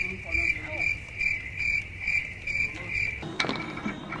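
A cricket chirping in an even rhythm, about two to three high chirps a second, cutting off suddenly about three seconds in.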